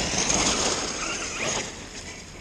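Electric 8S Losi DBXL-E 1/5-scale RC buggy driving across the field: a rushing hiss from tyres and drivetrain with a faint high motor whine, loudest at the start and slowly fading as it pulls away.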